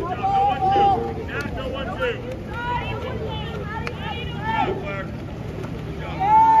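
Spectators talking and calling out over one another, several voices at once, with one long held shout in the first second.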